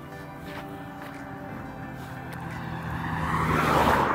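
A car driving by on the road. Its engine and tyre noise builds over the last second and a half and is loudest as it passes at the very end.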